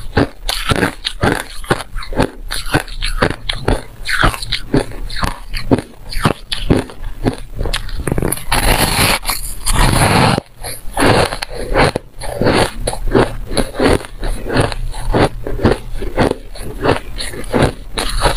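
Close-miked crunching of shaved ice being bitten and chewed, crisp crunches coming about three to four a second, with a denser, continuous stretch of crunching about halfway through.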